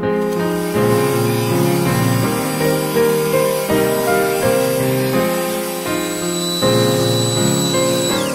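Piano background music, with an electric sander running underneath as a steady hiss; its motor whine drops in pitch and stops at the very end as it is switched off.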